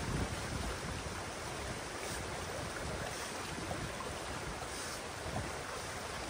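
Water rushing fast through an opened beaver dam in a drainage channel, a steady rush of current. Wind buffets the microphone with an uneven low rumble.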